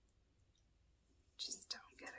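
Near silence, then a short, breathy burst of a person's soft voice near the end, like whispered speech.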